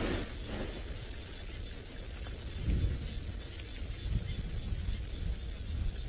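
Wind buffeting an outdoor microphone: a gusty low rumble with a faint hiss.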